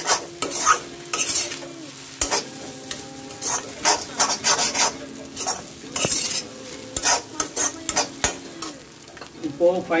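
Perforated steel spatula scraping and stirring scrambled egg masala across a hot pan in repeated, irregular strokes, with the food sizzling as it fries underneath.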